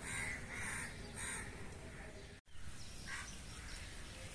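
A bird calling three times in quick succession, about half a second apart, then once more faintly past the middle. The sound cuts out completely for an instant around halfway through.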